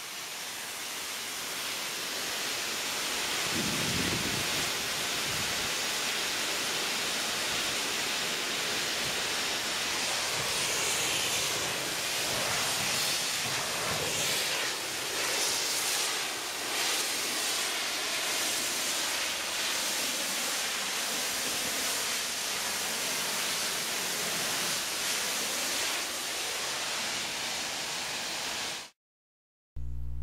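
Pressure-washer wand spraying a jet of water and detergent against a semi-trailer's rear doors: a steady hiss of spray that builds over the first few seconds and cuts off abruptly about a second before the end.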